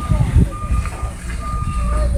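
A steady low engine-like rumble with a thin high-pitched beep that comes and goes.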